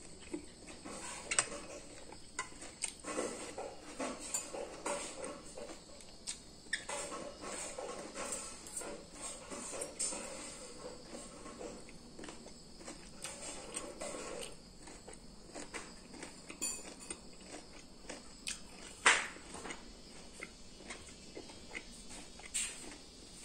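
Someone eating rice: a metal spoon and fork clicking and scraping against a ceramic bowl at irregular intervals, over continual close chewing and mouth noises. The sharpest clink comes about 19 seconds in.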